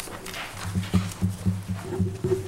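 A low buzz pulsing about four times a second, with a higher steady tone joining near the end.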